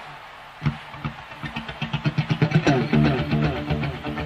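Rock song intro: an electric guitar plays fast, repeated, muted notes through a rhythmic echo delay. It starts with a sharp accent about half a second in, then gets busier and louder.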